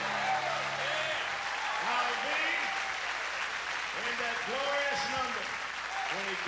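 Concert audience applauding at the end of a song, over the band's last held chord, which dies out about a second in. Voices ring out over the clapping.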